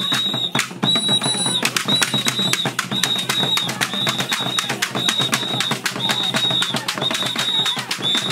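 Acholi traditional dance music: many small hand drums struck in a fast, steady rhythm, with a high shrill tone repeating about once a second and voices over the drumming.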